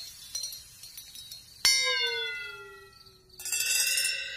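A single struck chime-like tone about a second and a half in, ringing out and sagging slightly in pitch as it fades, followed near the end by a shimmer of high tinkling chimes.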